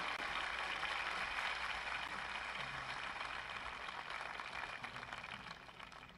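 Studio audience applause fading away steadily to near quiet.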